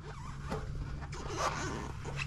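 Quick rasping, rustling scrapes of a hand working in among metal parts and cables, over a low steady hum.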